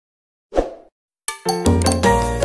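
A short pop sound effect about half a second in, then a sharp click, then music with a steady bass line begins.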